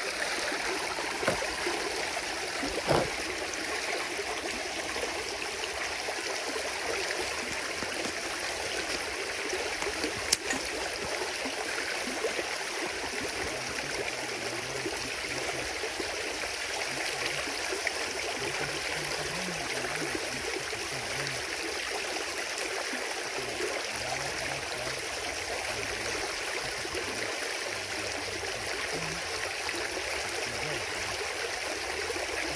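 Water running steadily through the freshly cleared breach in a peat beaver dam, the pond draining out through the gap. A few brief knocks come near the start and one sharper one about ten seconds in.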